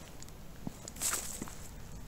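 Footsteps of a person walking along a path, a soft step about every three-quarters of a second, with a brief louder rustle about a second in.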